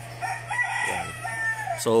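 A chicken crowing once: a drawn-out call of about a second and a half that falls away at the end, over a steady low hum.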